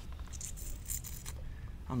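A drink can being handled and sipped from: a few faint, light clicks and rustles over a steady low room hum.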